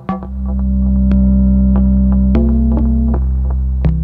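Eurorack modular synthesizer playing a generative patch: a loud, sustained low bass drone swells in over the first second and holds. Its pitch steps up slightly about two and a half seconds in and drops back a second later, while sparse short struck notes sound over it.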